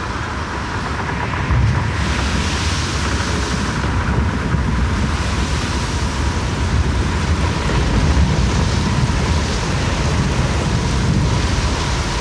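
Dense, steady rushing noise with no beat or melody, with a faint thin steady tone held through it, closing out the track.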